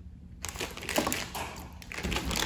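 Plastic jelly bean bag crinkling and crackling in the hands as it is handled. There are a few short, faint crackles starting about half a second in.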